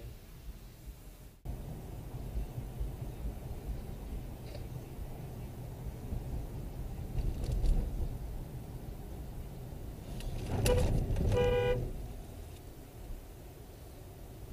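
Steady low road noise heard from inside a moving car, then a car horn honking twice about three-quarters of the way through: a short beep followed by a longer honk.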